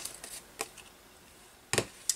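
Quiet handling of a trimmed piece of card chocolate wrapper: a couple of soft clicks and rustles, then a short sharp tap near the end as the piece is laid down on the paper page.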